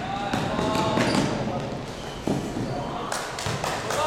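Basketball being dribbled on an indoor court, a run of bounces ringing in a large sports hall, with voices shouting over them.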